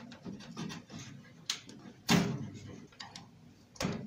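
Small clicks and scrapes of fingers and a screwdriver working the wire connectors on a toaster oven's timer terminals, with a short, louder scrape about two seconds in and another near the end.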